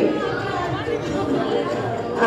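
Indistinct chatter of a seated audience, several voices talking over one another at a low level.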